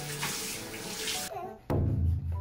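Water running from a bathroom tap, a steady hiss that cuts off about a second and a half in. It gives way to background music with a steady bass line.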